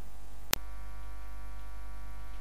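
Steady low electrical hum with no music playing, broken by a single sharp click about half a second in.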